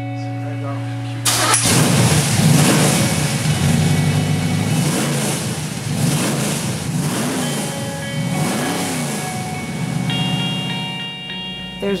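The freshly installed Chevy 350 V8 in a 1978 Chevy Nova, breathing through Hedman headers and a custom 2½-inch exhaust, fires up for the first time about a second in. It catches at once and runs loud. It is then revved several times, the pitch rising and falling with each blip.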